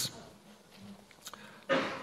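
A pause in speech at a lectern microphone: faint room tone, then a short breath drawn near the end.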